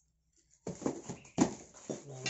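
Plastic-wrapped PVC weight plates knocking against each other and the cardboard box as they are handled: a run of about five sharp knocks with plastic rustle, starting about two-thirds of a second in, the loudest near the middle.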